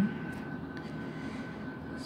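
Steady background whir, even and unchanging, with a faint thin high whine running through it.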